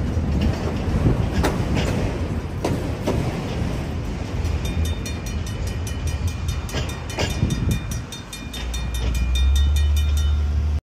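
Tail end of a freight train of autorack cars rolling past, its wheels clacking over rail joints as the last car clears. From about halfway through, a steady, even ringing of strokes takes over, typical of the grade-crossing electronic bell still sounding. A low rumble swells near the end.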